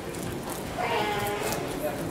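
A high-pitched, drawn-out voice sounding for about a second, starting a little before the middle.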